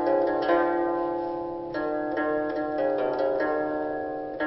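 Hazkar, a 40-string finger-plucked zither-like instrument, played solo: single plucked notes come every half second or so, each ringing on and overlapping the next in a slow melody.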